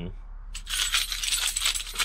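A big bunch of keys on a key hook jangling, a run of metallic jingling and clinking that starts about half a second in.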